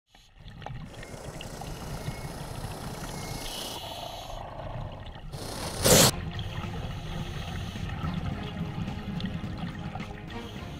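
Water trickling and bubbling steadily, with one short loud rush of noise just before six seconds in.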